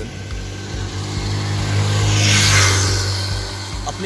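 A road vehicle passing close by: its tyre and engine noise swells, peaks about two and a half seconds in and fades away, over a steady low hum.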